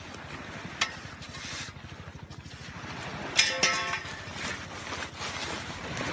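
Surf and wind buffeting the microphone on the shore, with a sharp click about a second in and a short pitched call, the loudest sound, about three and a half seconds in.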